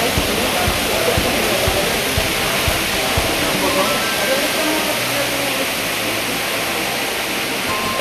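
Water from a stepped indoor fountain cascading down its tiers, a steady rush, with the murmur of voices beneath it.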